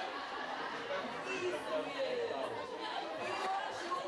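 A crowd of people chattering at once, many voices overlapping into an indistinct hubbub with no single speaker standing out.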